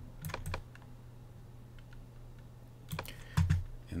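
A few sharp clicks from working a computer's mouse and keys: two just after the start and a small cluster about three seconds in, over a steady low electrical hum.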